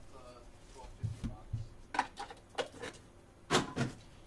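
Trading-card box being handled and opened by hand. A few soft knocks come a little after a second in, then sharp scraping and rustling strokes around the middle, with the loudest near the end.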